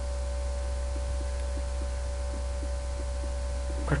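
Steady low electrical hum with a few fainter steady tones above it: the background hum of the recording setup, with no other event standing out.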